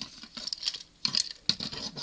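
Plastic parts of a Transformers action figure clicking and tapping as they are moved by hand while the arms are brought up: a quick run of small, irregular clicks.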